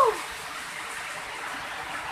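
Steady rushing of a waterfall pouring onto rocks.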